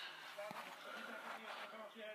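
Faint voices in the background, with a light click about half a second in.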